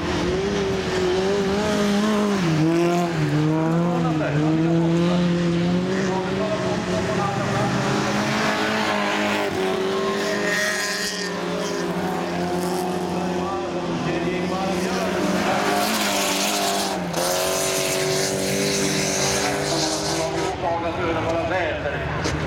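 Folkrace cars' engines running hard on a gravel track, their pitch rising and falling continually as the drivers rev up and lift off.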